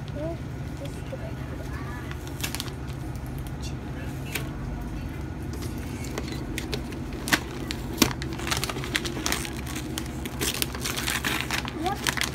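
Gift wrapping paper crinkling and tearing as a present is unwrapped by hand: sharp rustles and rips that grow busier about halfway through, over a steady low hum.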